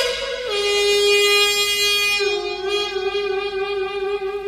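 Solo piri, the Korean double-reed bamboo pipe, playing long held notes: the pitch slides down about half a second in and holds, then steps slightly up with a wavering shake about halfway through.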